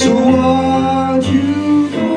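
Live solo performance of a song from a musical: a man singing held notes over guitar, with a chord struck at the start.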